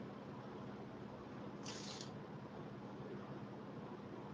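Quiet room tone with a faint steady hum, and one brief soft hiss a little under two seconds in.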